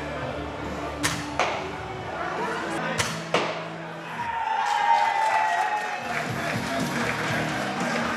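Mounted crossbow shots at a wooden bird target: two pairs of sharp snaps, one pair about a second in and another about three seconds in, over music.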